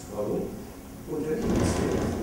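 A man lecturing in German, speaking into a handheld microphone.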